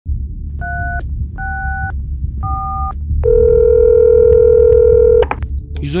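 Telephone keypad tones as three digits are dialled, 112, each a short two-note beep, followed by a steady ringing tone for about two seconds that cuts off with a click as the line is answered.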